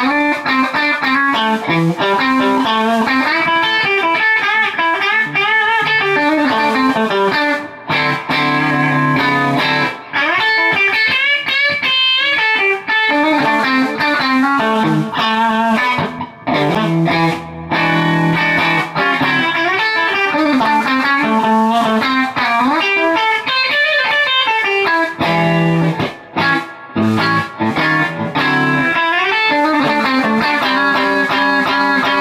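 Fender Telecaster with Fender Custom Shop Texas Special pickups, played on its bridge pickup through a Fender Super-Sonic 60 amp with a Celestion Vintage 30 speaker: blues lead lines with string bends and vibrato, with short pauses between phrases.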